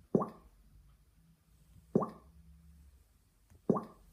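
Three short hollow pops, a little under two seconds apart, each dying away quickly.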